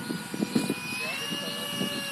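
Remote-control ducted-fan jet model in flight, heard as a steady high whine whose pitch rises slightly about a second in, with voices in the background.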